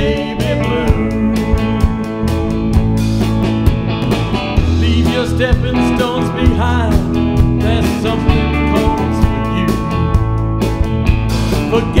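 Live rock band playing an instrumental break: electric guitars over bass guitar and a drum kit keeping a steady beat.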